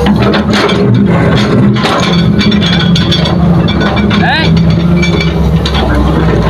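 Heavy diesel engines of an excavator and a dump truck running steadily, with a run of knocks and clinks in the first two seconds.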